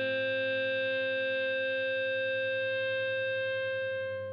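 Final chord of an emotional hardcore song left ringing on distorted electric guitar: one held, steady chord with no new notes struck.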